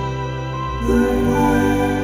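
Live band music: sustained chords held steady, moving to a new chord about a second in.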